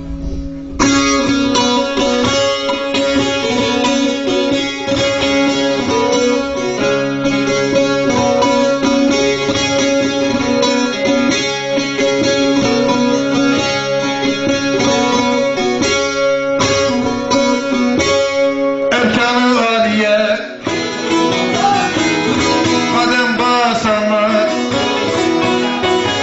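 Bağlama (saz) strummed rapidly over a steady drone, accompanying a semah dance. Near the end a voice starts singing over it.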